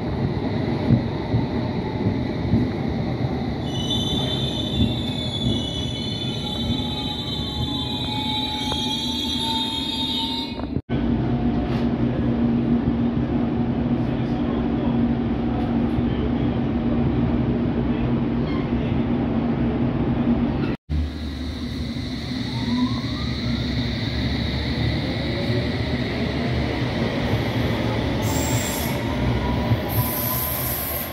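London Underground S Stock train. First it draws into the platform with high wheel and brake squeal and a falling motor whine as it slows. Then comes a steady low running hum inside the carriage, and finally a rising traction-motor whine as the train pulls away and accelerates.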